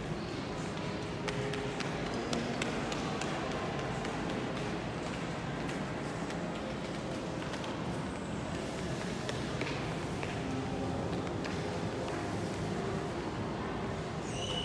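Indoor shopping mall ambience: a steady background of distant voices and footsteps, with many small taps and clicks, most frequent in the first few seconds.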